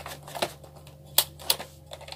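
Sharp plastic clicks and knocks of a mains plug being handled and pushed into a multi-socket extension board, three louder clicks about half a second, one and a quarter and one and a half seconds in, over a faint steady low hum.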